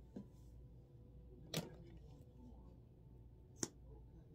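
Three short clicks and knocks of small makeup items being handled, over a quiet room hum: a faint one at the start, a louder knock about a second and a half in, and a sharp click near the end.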